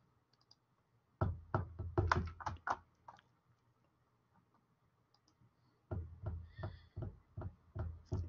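Computer keyboard typing: two short runs of keystroke clicks, one about a second in and another near the end.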